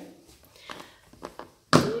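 A few faint light taps from handling, then a woman's voice cuts in sharply with a single short word near the end.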